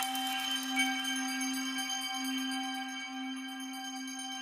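Sampled Nepalese bell processed in a drum sampler, its tonal part ringing on as a sustained drone: a steady low tone that wavers slowly, with several higher partials above it and a few faint clicks in the first half second.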